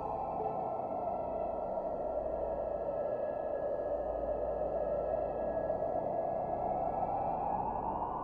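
Ambient meditation music: a steady, airy synthesizer wash that swells gently, with faint held tones from earlier notes slowly fading out.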